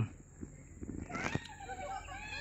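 A drawn-out animal call starting about halfway through, with a short rising squeak just before it.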